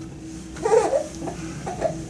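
A baby vocalising briefly, two short sounds: one about half a second in and a shorter one near the end, over a faint steady hum.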